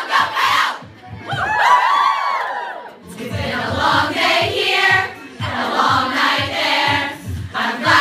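A large group of young women singing and chanting a song in unison. About a second in they break into a chorus of high, swooping whoops for a couple of seconds, then return to a rhythmic chant over a steady beat.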